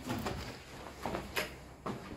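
Footsteps on a bare concrete floor strewn with rubble and grit: a few soft scuffing steps, about half a second apart, in the second half.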